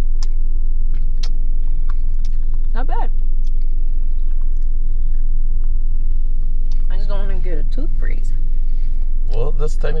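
Steady low rumble of an idling car, heard from inside the cabin.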